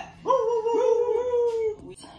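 A dog howling: one long, nearly level note of about a second and a half, with a brief catch partway through, fading near the end.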